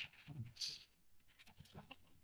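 Quiet handling of foam packing pieces being lifted out of a laser cabinet: a few faint short rubbing sounds.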